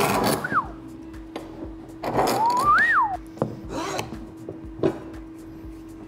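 Steel pipe clamps and a glued-up wooden cutting-board blank being handled on a workbench. There is a scraping slide at the start and another about two seconds in, each with a whistling glide in pitch, followed by a few light wooden knocks, all over background music.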